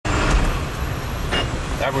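Steady low rumble of a vehicle driving in city traffic, heard from inside the cab, with a voice starting at the very end.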